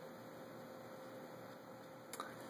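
Faint steady electrical hum over low room noise.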